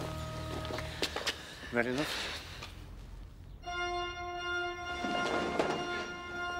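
Church organ music: a held chord starts sharply about halfway through and sustains, after a brief lull with a few clicks and a short warbling sound.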